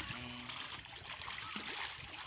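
Steady light splashing of milkfish feeding at the pond surface.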